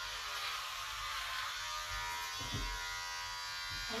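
Electric hair clippers running with a steady buzz, held at a child's head while cutting his hair.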